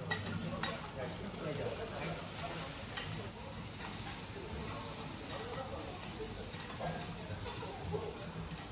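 Rice frying on a teppanyaki steel griddle, sizzling steadily as two metal spatulas stir and scrape it, with a few sharp clicks of the spatulas on the steel near the start and again about three seconds in.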